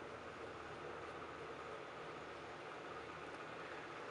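Faint, steady background hiss of room tone, with no distinct clicks or knocks.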